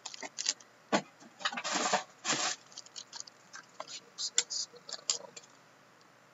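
Sealed foil hockey card packs being handled and slid across a stack: a string of crinkles and clicks, with a longer crinkle about two seconds in.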